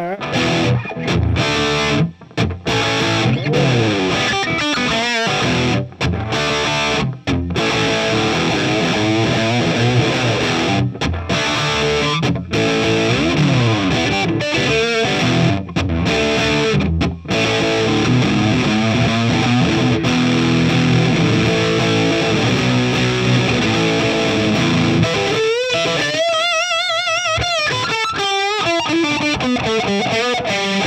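PRS SE Santana Abraxas electric guitar played through a Marshall JCM2000 amp on its gain channel: a distorted hard-rock chord riff broken by sudden stops. Near the end comes a held lead note with wide vibrato.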